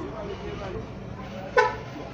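Faint background voices over a steady hum, with one short horn toot about one and a half seconds in, the loudest sound.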